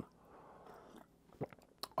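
A man taking a sip from a mug: faint sipping and swallowing, then two small clicks in the second half.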